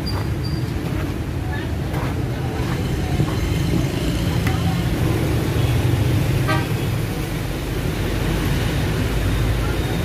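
Dense street traffic of motor scooters, motorbikes and cars passing below, a steady engine rumble with horns tooting; a short horn sound stands out about six and a half seconds in.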